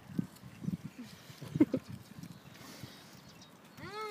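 Faint scattered soft knocks and handling rustle, with one sharp click about one and a half seconds in; near the end a person's voice starts a long, falling "ooh".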